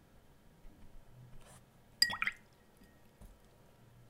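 Faint strokes of a wet watercolour brush on paper, with one sharp click and a brief ringing tone about halfway through.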